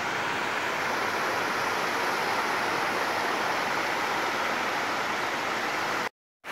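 Shallow river water running over and between exposed stones, a steady even rush; the river is low, its rocks showing above the water.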